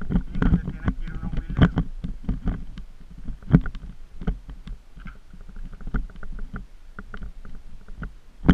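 Irregular knocks and rattles of travelling over a bumpy dirt trail, over a constant low rumble, with the loudest jolts about half a second and three and a half seconds in.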